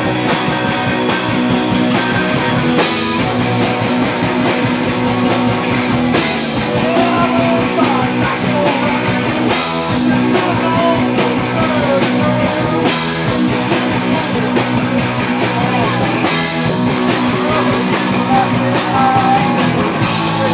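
Live rock band playing loud and without a break: electric guitars, bass guitar and a drum kit.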